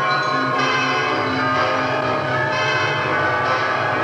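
Bells ringing: many struck tones overlap and ring on, with new strikes every second or so.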